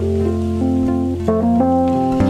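Live band music in an instrumental passage with no singing: acoustic guitar and a melody of held notes that step from pitch to pitch over a steady low bass note.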